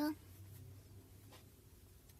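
A voice finishes a word right at the start, then quiet room tone with a faint steady hum and a single soft click about a second and a half in.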